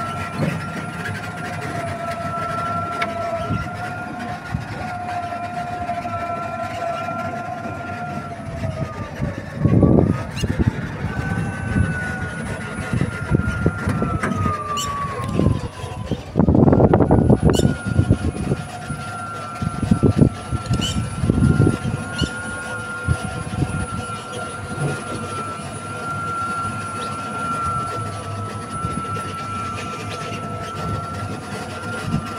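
A vehicle's motor whining steadily while driving. The whine falls in pitch twice as it slows and picks up again, with bursts of wind rumble on the microphone.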